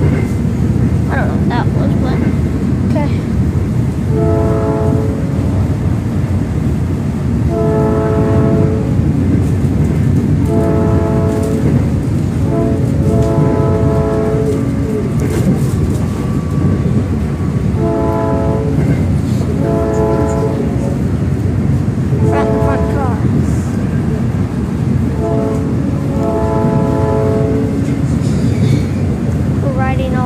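Electric passenger train's horn sounding a series of blasts, each a second or two long, heard from inside a car riding the rails, over the steady rumble of wheels on track.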